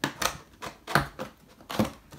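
Fingers picking and scratching at a tape seal on a cardboard box, making about five short, sharp scrapes and clicks.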